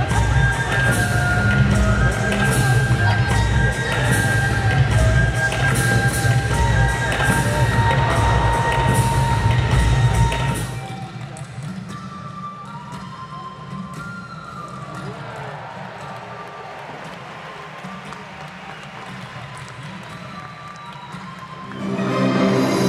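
Live stage-show music played over an arena sound system, with a heavy low beat and regular percussive strokes. About eleven seconds in it drops suddenly to a much quieter passage of faint held tones.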